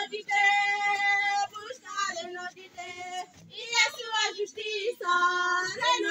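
A high female voice singing a gospel song in a local language, holding a long note early on and again near the end, with shorter phrases in between.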